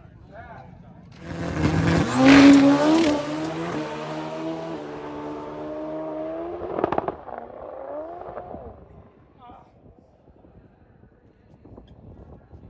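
Top Fuel nitro drag motorcycle engine running very loud, starting abruptly, peaking a couple of seconds in and stepping in pitch, with a sharp crack near the middle before it fades away over several seconds.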